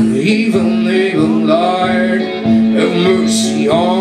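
Live solo blues on a Stratocaster-style electric guitar, with a man singing over it. A low note holds steady under the playing, and pitches bend upward about halfway through and again near the end.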